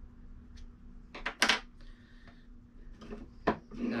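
Sharp metallic clicks from the Tippmann M4-22's removed bolt carrier group and charging handle being handled by hand: a quick cluster of clicks about a second and a half in, and another single sharp click near the end.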